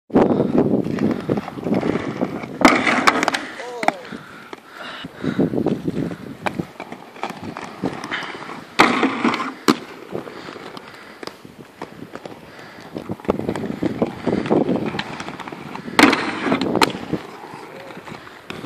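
Inline skate wheels rolling over paving stones, broken three times by grinds: the skates slam onto a curb and scrape along it for about a second, about two and a half, nine and sixteen seconds in.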